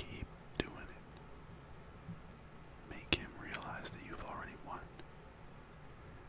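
A man whispering close to the microphone, with two sharp clicks in the first second before the whispering resumes.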